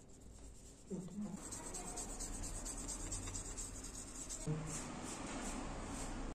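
Fast, scratchy rubbing strokes, starting about a second in, as the contacts of a keyboard's key-contact circuit board are scrubbed clean with a rubber eraser and a small brush.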